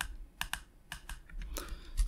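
A few separate computer keyboard keystrokes, spaced irregularly.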